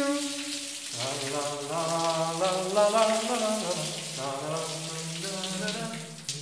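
A low voice singing a slow wordless tune in held notes that step up and down, over a steady hiss.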